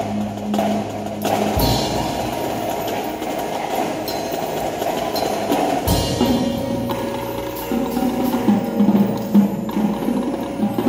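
Indoor percussion ensemble playing live: mallet keyboards and drums in a dense, clicking texture, with deep booming hits about one and a half seconds in and again about six seconds in, and sharp loud strikes near the end.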